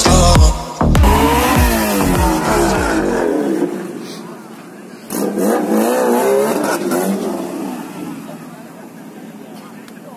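Car engines revving and accelerating, with a second burst of revving as a car pulls away about five seconds in, over crowd voices. Background music with a heavy bass beat plays under the first three seconds, then its bass cuts out.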